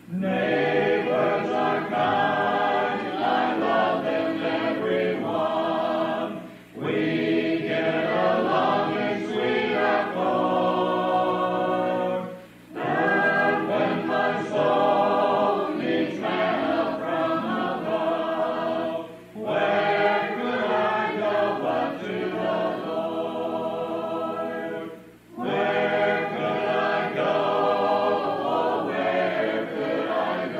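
A church congregation singing a hymn a cappella, unaccompanied voices together, recorded on cassette tape. The hymn moves in lines of about six seconds, each followed by a short break for breath.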